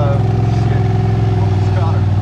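Honda Talon side-by-side's 999 cc parallel-twin engine running at a steady, even drone as it wades through deep swamp water and mud.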